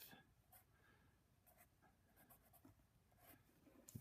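Faint scratching of a pen writing on paper, a few short strokes as the letters "(cm)" are put down.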